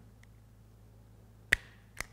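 Summit Racing spring-loaded auto-adjusting wire stripper squeezed slowly on a wire: a faint tick, then a single sharp snap about one and a half seconds in as the jaws grip and pull the insulation off, with a smaller click near the end.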